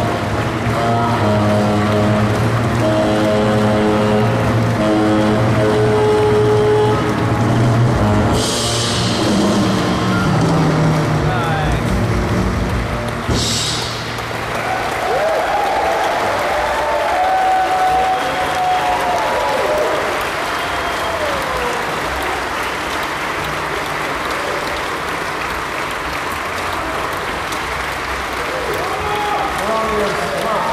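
A live jazz quartet of saxophone, piano, double bass and drums closes a tune on a long held final chord, with two cymbal crashes, the second as the chord ends. The audience then applauds and cheers.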